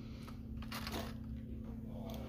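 Faint light clicks and rustles of plastic lure packages being handled on a tabletop, over a steady low hum.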